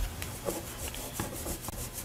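Pen writing on a paper form on a tabletop: a run of short, faint scratching strokes as a name and address are printed by hand.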